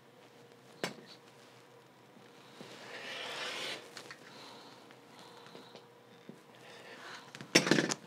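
Rotary cutter rolling through layered cotton fabric along an acrylic ruler on a cutting mat, one raspy cutting stroke of about a second. A sharp tap comes about a second in, and a few loud knocks near the end as the ruler is lifted away.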